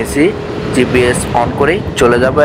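A man talking over the steady running noise of a motorcycle under way on the road.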